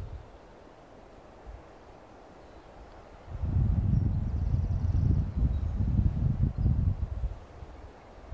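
Wind buffeting the microphone: a low, uneven rumble that starts about three seconds in and rises and falls in gusts, after a quiet opening.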